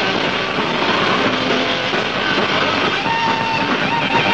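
Heavy metal band playing live, with distorted electric guitar, bass and drums in a dense, steady wall of sound, and a held high note near the end.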